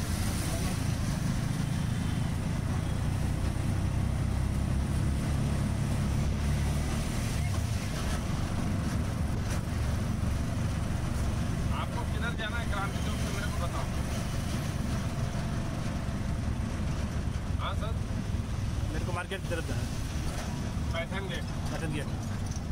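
Auto-rickshaw's small engine running as it drives through traffic, heard from inside the open cabin with road noise. The drone is heaviest for the first eight seconds or so, then eases.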